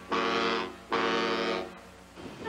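Ship's horn giving two steady blasts about a second apart, each of the same pitch and just under a second long.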